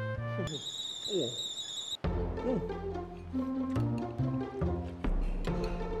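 Background music with plucked and bowed strings over a steady bass line, switching abruptly to a new passage about two seconds in, just after a high steady tone. A man gives two short appreciative "mm" sounds while tasting food.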